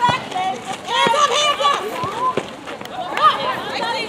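High-pitched young voices shouting and calling out during netball play, several at once, with no clear words.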